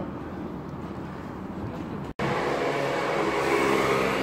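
Steady city street traffic noise. It drops out for an instant about halfway through and comes back louder.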